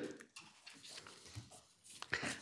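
A quiet pause: faint room tone with a few soft, brief small noises.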